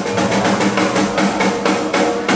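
Rock drum kit played as a drum roll: a quick, even run of hits, about six or seven a second, over sustained low instrument notes.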